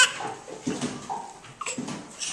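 A crawling baby making a few short, soft vocal sounds, the tail of a high squeal cutting off at the very start, with a couple of soft knocks of hands on a hardwood floor.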